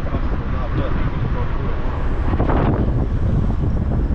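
Wind rushing over the microphone and road noise from a moving vehicle, a steady low rumble throughout. About two and a half seconds in, a short swell of hiss, like traffic passing close by.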